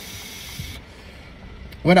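Steady hiss of a drag on a small vape held to the lips, stopping just under a second in, over a low rumble; a man's voice starts near the end.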